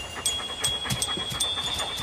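A dog panting close up, an irregular run of short, quick breaths, with a faint steady high tone underneath.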